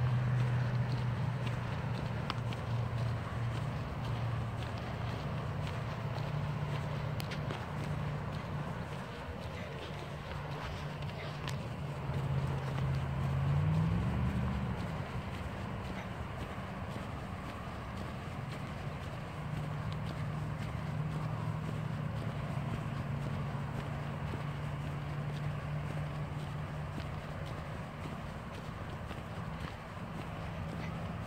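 Bicycle rolling along a paved trail: steady tyre and riding noise with a low hum that rises briefly in pitch about halfway through, and faint scattered clicks.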